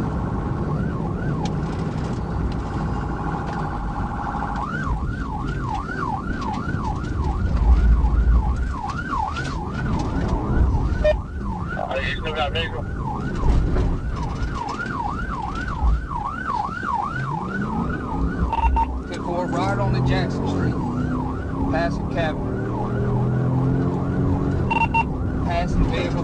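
Police cruiser's siren heard from inside the pursuing car: a wail that switches about five seconds in to a fast yelp of two or three rises a second, breaking off briefly partway through. The car's engine and road noise run underneath, with a climbing engine note near the end.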